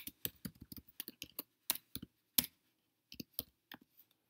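Computer keyboard typing: a quick run of keystrokes, a short pause about two and a half seconds in, then a few more keystrokes.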